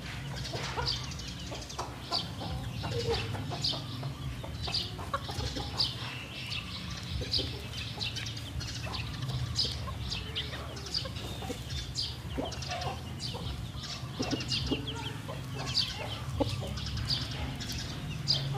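Domestic chickens clucking in a farmyard, with many short, high bird chirps coming several times a second throughout, over a low steady hum.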